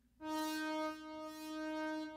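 A synthesizer note played on a keyboard: one sustained pitched tone that starts suddenly about a fifth of a second in and is held, its bright upper edge swelling twice.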